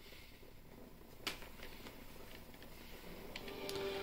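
Quiet room tone with one sharp click about a second in, a gamepad button being pressed to select, followed by a few faint ticks. A faint steady low tone comes in near the end.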